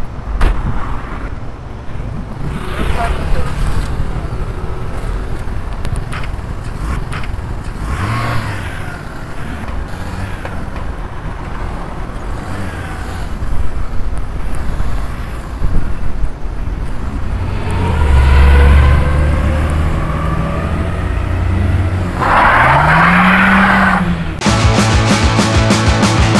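Peugeot 206 CC car engine running, then rising in pitch over the last second or two as the car pulls away, with some voices around it.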